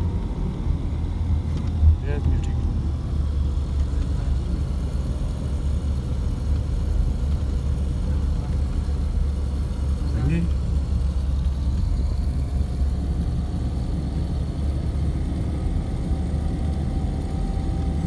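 Steady low road and engine rumble inside the cabin of a moving car, with a short thump about two seconds in.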